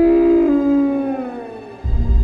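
Film sound effect of a Brachiosaurus call: one long, high, pitched cry that holds, then slides down in pitch and fades. Near the end it is cut off by a sudden deep boom.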